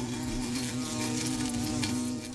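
A fly buzzing: a steady, even drone held at one pitch.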